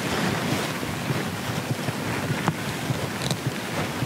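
A steady rushing noise, like wind or surf, with one faint click about two and a half seconds in.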